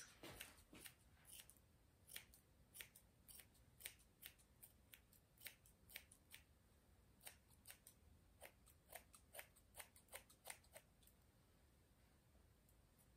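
Grooming scissors snipping the hair on an old Schnauzer's face and head: a run of faint, quick, irregular snips, about two or three a second, that stops shortly before the end.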